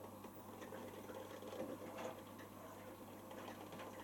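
Miele Professional PW6055 commercial washing machine in its cotton prewash: the drum turning and wet laundry tumbling, with faint irregular taps and splashes over a steady low hum.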